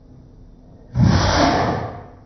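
A man coughing hard into his fist: one loud, sudden cough about a second in that fades out over just under a second.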